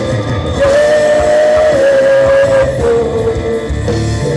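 Live Catholic worship band playing: long held sung notes over electric guitar, drums and keyboard, the melody stepping down in pitch about three seconds in.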